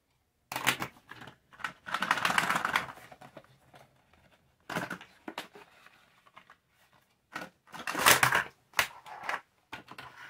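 Small plastic retractable tape measures and their packaging being handled: scattered sharp clicks and plastic rustling, with a longer rustle about two seconds in and another about eight seconds in.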